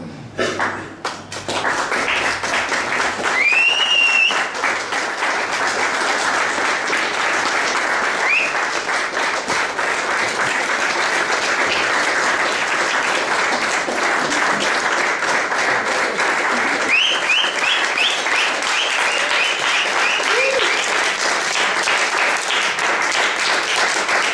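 Audience applause that breaks out suddenly about half a second in and carries on steadily, with a few high calls from the crowd.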